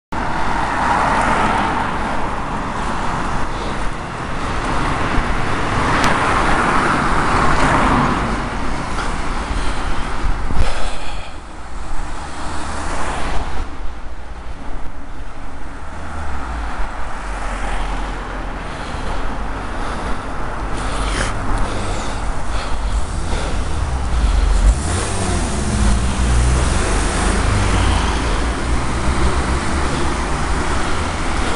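Road traffic noise of cars driving close by on a town street, heard from a moving bicycle. A deep low rumble grows louder through the second half.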